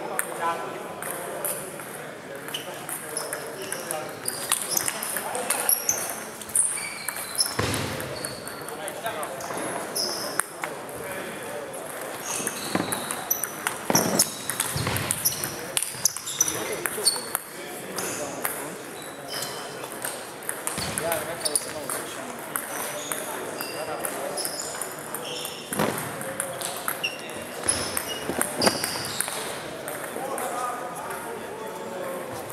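Table tennis ball striking the bats and the table in rallies, a run of short sharp clicks and high pings in a large hall, with voices in the background.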